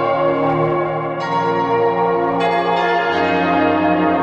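Background music of sustained, ringing bell-like chimes, with a new chord struck about every second or so.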